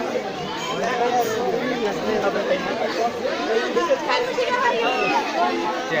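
Crowd chatter: many voices talking and calling over one another continuously, with no single voice standing out.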